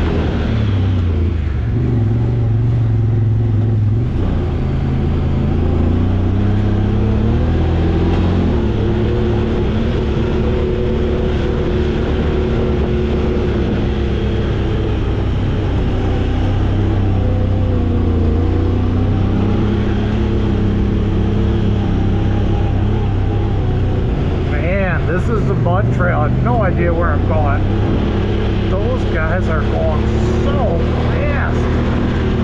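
Honda Talon X side-by-side's parallel-twin engine running at low, varying speed while the machine crawls along a rough dirt trail, its note rising and falling gently. Near the end a voice-like sound rises above the engine.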